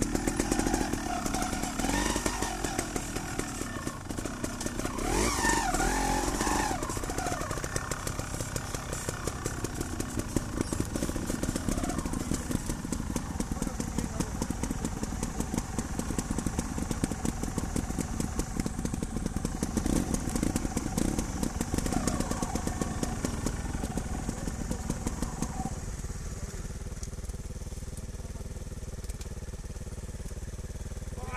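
Trials motorcycle engine running close by. It revs up and down unevenly in the first several seconds, then settles into a steadier, lower idle near the end.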